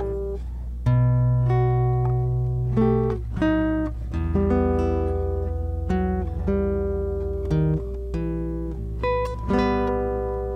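Nylon-string classical guitar played fingerstyle: a slow melody of single plucked notes over held bass notes.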